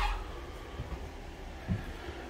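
Low rumble and handling noise from a handheld camera carried through an empty room with a linoleum floor, with one soft thump near the end.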